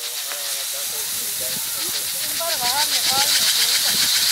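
Grain poured from a raised basket to winnow it, falling in a steady rushing stream onto the heap below; the rush grows louder in the last second or so.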